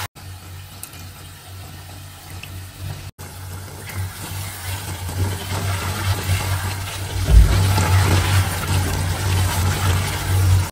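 Potatoes and tomato-chilli masala sizzling in an aluminium pressure-cooker pot as a wooden spatula stirs them, growing louder from the middle onward as the wet masala cooks down. Background music plays underneath.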